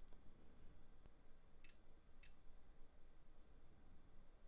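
Near silence: faint room tone, with two short faint clicks about half a second apart a little under two seconds in.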